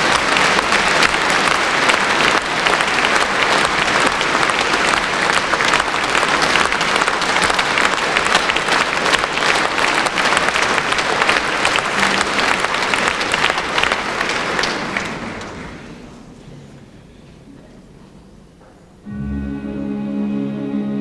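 A large concert-hall audience applauds, and the applause dies away after about fifteen seconds. Near the end, a symphony orchestra comes in with sustained string notes, opening the song.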